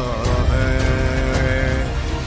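Hindi song: a singer holds one long note on the word 'है' over a heavy, dense bass-and-drum backing.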